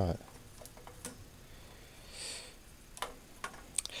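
A few faint clicks and taps scattered through, with one brief soft breathy hiss about two seconds in.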